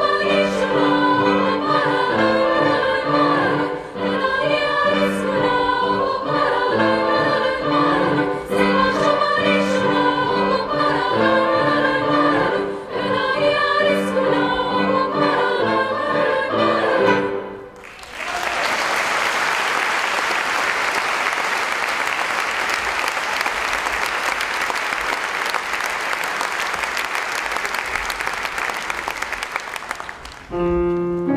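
A girls' choir singing; the song ends about 17 seconds in, and audience applause follows for the last twelve seconds or so.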